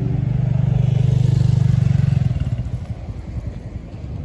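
A motor vehicle engine, most like a motorcycle, running steadily as a low pulsing drone, then fading out a little over two seconds in.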